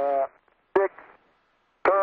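Speech only: a man's voice trails off, a short word breaks about a second of near silence, and speech starts again near the end.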